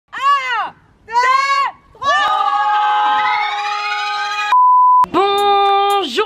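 A group of adults and children shouting: two short calls, then everyone yelling together. About four and a half seconds in, a steady half-second bleep cuts in, then a long held yell.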